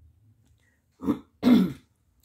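A woman clearing her throat in two short bursts about half a second apart, the second louder.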